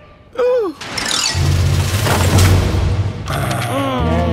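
Cartoon sound effects over background music. A short falling vocal grunt comes near the start, then a loud noisy whoosh with a falling pitch lasts about two seconds.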